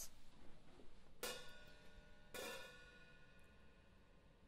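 Saluda Glory hi-hat cymbal struck twice, about a second apart, each strike left to ring with a shimmering, slowly fading tone.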